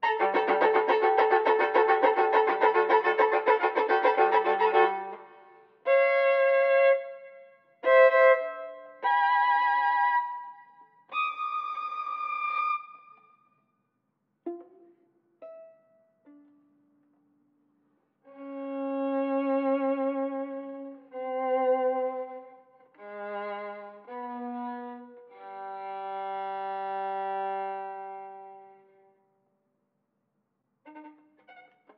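Solo violin, bowed: a loud, dense run of notes for about five seconds, then short separate notes with silences between, and from the middle on, long held notes with vibrato that swell and fade away.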